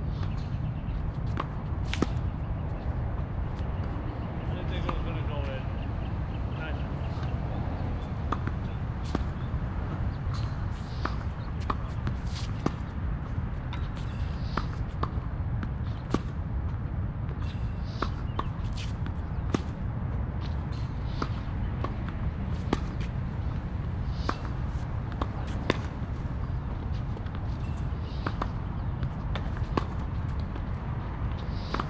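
Tennis balls struck by racquets and bouncing on a hard court during a rally: sharp pops at irregular intervals, roughly one or two a second, over a steady low rumble.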